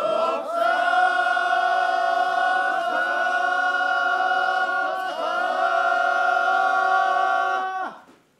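Several men's voices chanting one long drawn-out call together, the procession chant of the feather-spear (keyari) bearers. The held notes shift in pitch twice at syllable changes and stop abruptly just before the end.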